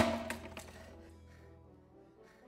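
A sharp crash at the very start, then a few fainter knocks over the next half second, under a faint dark film score that fades away.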